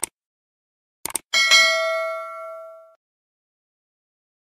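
Subscribe-button animation sound effects: a short click, then two quick clicks about a second in, followed by a notification bell ding that rings out and fades over about a second and a half.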